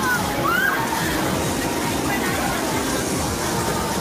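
Water jets spraying a funfair looping ride's gondola and its riders, a steady rushing and sloshing of water, over crowd voices with a couple of short shouts about half a second in.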